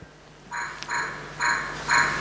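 Electronic countdown-timer alarm signalling that a speaker's time is up: short repeated beeps, two about a second apart, starting about half a second in.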